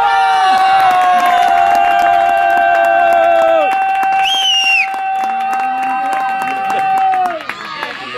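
Spectators' long, drawn-out goal shout after a goal: several voices hold one note for about seven seconds, one dropping out about halfway and a brief higher cry sliding down just after it.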